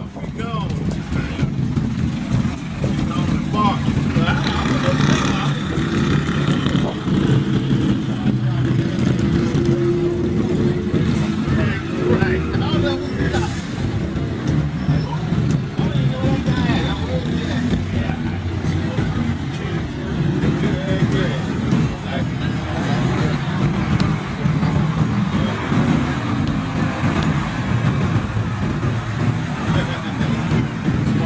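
Street traffic: car engines running and passing close by in a steady low rumble, with indistinct chatter from a roadside crowd.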